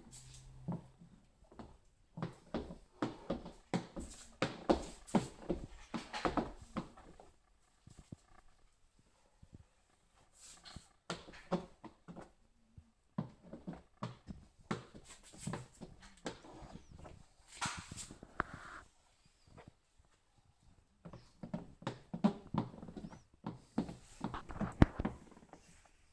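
Plastic squeegee worked over wet tint film on the inside of a car's rear window: quick rubbing, scraping strokes against the glass, in bursts separated by short pauses.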